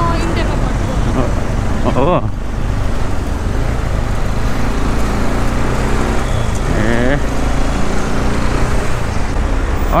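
A motorcycle running steadily as it rides through city traffic, under a loud continuous rush of road and traffic noise.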